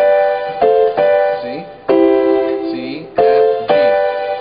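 Piano keyboard playing four block chords, each struck and left to ring and fade, the first three about a second apart and the last quickly after; the third chord sits lower. They demonstrate chord inversions of C, F and G.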